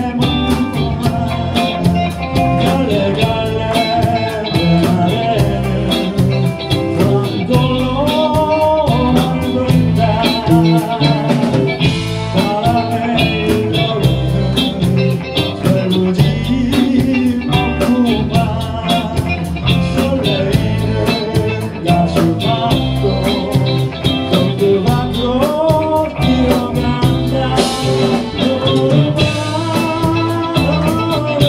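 A live band playing a song: electric guitars, bass guitar, drum kit and keyboard, with a man singing lead into a microphone.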